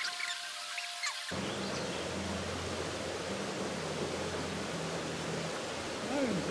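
Steady rush of a shallow river running over rocks. In the first second or so a different sound of steady high tones and short chirps is heard, which cuts off suddenly about a second in.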